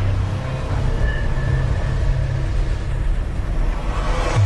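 Logo-intro sound effect: a steady, dense rumble with a low drone underneath.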